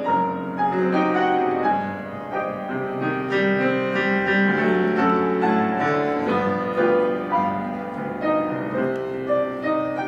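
Steinway grand piano playing a romance, single notes and chords struck and left ringing.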